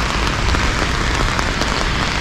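Steady rain falling on an open umbrella held overhead: a dense, even stream of small drop ticks.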